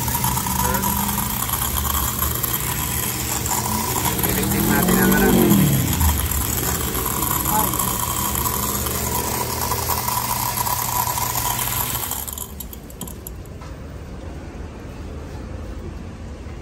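Pressure washer running and spraying water onto a car's cabin air filter and aluminium A/C evaporator core, the pump's steady drone under the hiss of the spray, loudest with a swell and drop in pitch about five seconds in. The spraying stops about twelve seconds in, leaving a quieter background.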